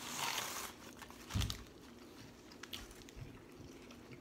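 Paper sandwich wrapper crinkling for the first moment, then a single dull thump about a second and a half in, followed by faint small clicks of eating and chewing.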